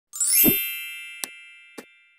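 Channel logo-intro sound effect: a quick rising shimmer into a bright, many-toned chime with a low thump about half a second in, ringing down and fading. Two short click effects follow near the end, for the animated subscribe button and notification bell.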